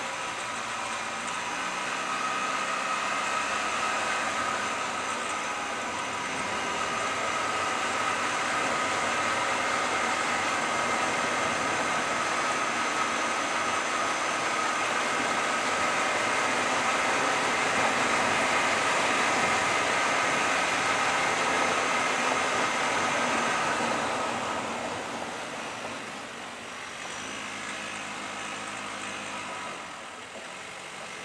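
Car driving, its engine and road noise heard steadily, with fixed steady tones running through the noise. After about 24 seconds the sound drops and a lower engine hum comes through near the end.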